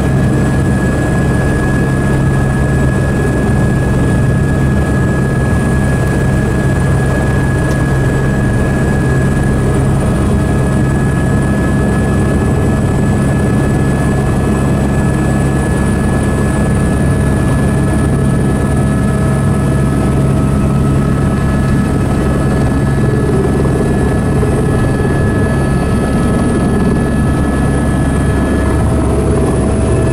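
Helicopter engine and rotor running, heard from inside the cabin: a loud, steady drone with a thin high whine on top that edges up slightly near the end.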